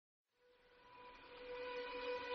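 Background music fading in from silence: a sustained droning chord with steady held notes, swelling gradually in loudness.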